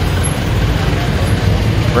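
Passenger jeepney's diesel engine running with a steady low rumble as it passes close by in street traffic.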